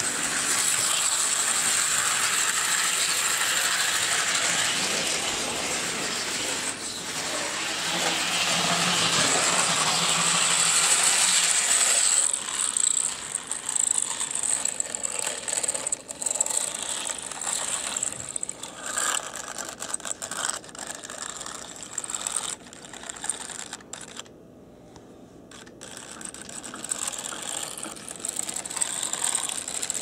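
Model steam locomotive running on the track, its motor and gearing whirring with a ratchety mechanical clatter from the wheels and running gear. The sound is steady for about the first twelve seconds, then turns uneven and drops away briefly about twenty-five seconds in before building again.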